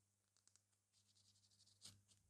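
Near silence, with faint brief rubbing strokes of a nail wipe over the glass crystals of a metal pendant and one slightly louder scratch near the end.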